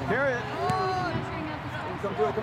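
Indistinct distant shouting from soccer players and sideline spectators, with one drawn-out call near the middle, over a steady murmur of open-air background noise.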